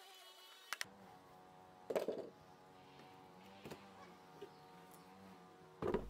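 A few faint hammer blows driving short nails into a hardwood paling box: two light taps about a second in, then a heavier knock at about two seconds. Faint steady background music underneath.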